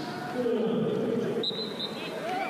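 A drawn-out voice call, then a referee's whistle blows one short blast near the end, stopping play for a foul.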